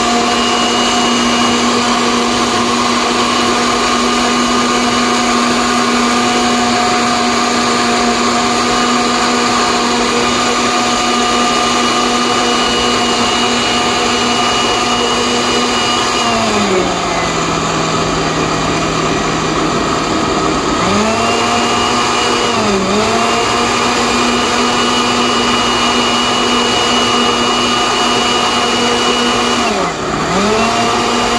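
Osterizer blender running, its motor humming steadily as it blends a watery mix of chopped vegetables. About halfway through the motor's pitch drops for a few seconds, then climbs back up, and it dips briefly twice more near the end.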